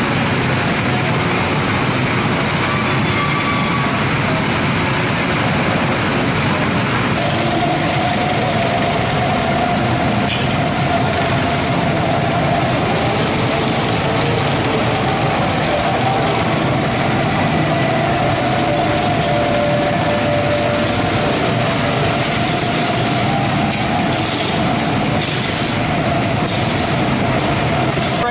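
Go-karts running on a track, a loud, unbroken mechanical drone heard from close by. A steady whine joins it several seconds in and holds for most of the rest.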